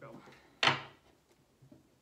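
A deck of tarot cards being shuffled by hand, with one sharp rush of cards about half a second in that fades quickly, followed by a few faint card taps.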